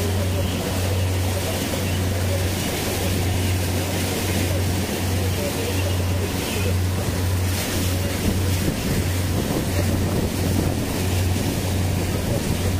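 Motorboat engine running with a low, wavering drone, over the rush and splash of water from the boat's wake and wind buffeting the microphone.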